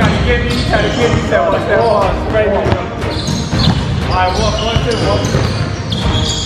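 A basketball dribbled on a hardwood gym floor, bouncing repeatedly during a one-on-one game, with wavering pitched sounds over the bounces a little over a second in and again after about four seconds.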